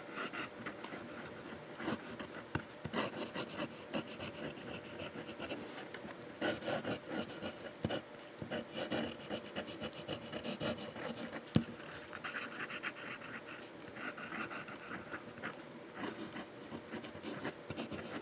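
Medium nib of a Waterman fountain pen, turned upside down for reverse writing, scratching faintly and irregularly across lined paper as a sentence is written, stroke by stroke. One sharper tick of the pen on the paper a little past halfway.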